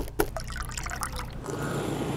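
A few sharp clicks of scissor blades against an ice cube, then lemonade pouring from a pitcher into a small ice shot glass, the pour growing fuller about a second and a half in.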